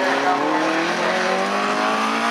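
Folkrace car's engine pulling under acceleration, its pitch rising steadily as it gains speed out of a hairpin.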